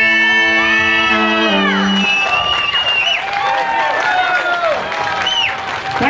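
A Celtic folk band's last held chord on Breton G bombarde, fiddles and acoustic guitar, ending with a downward slide about a second and a half in. The audience then cheers and whoops.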